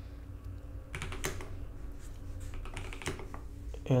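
Computer keyboard keystrokes: a few quick clicks about a second in and a few more about three seconds in, over a low steady hum.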